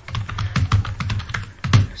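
Computer keyboard being typed on: a quick run of keystrokes, with one louder key press near the end.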